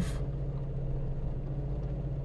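Steady low hum of a parked car idling, heard from inside the cabin.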